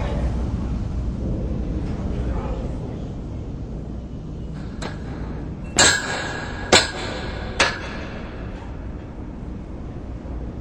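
Three sharp metallic clanks a little under a second apart, each ringing briefly, over a steady low rumble.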